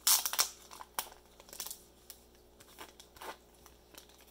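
Thin clear plastic bag crinkling and rustling as it is worked off a rigid plastic card top-loader, in a few short bursts, the loudest at the start.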